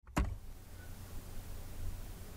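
A single sharp click shortly after the start, then faint microphone hiss and a steady low electrical hum.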